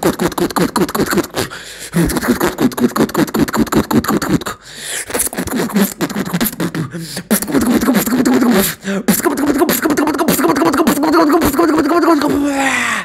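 Solo beatboxing into a microphone: rapid mouth-made percussive hits mixed with pitched vocal sounds, broken by a few short pauses. Through the second half a held, pitched vocal tone runs under the beat.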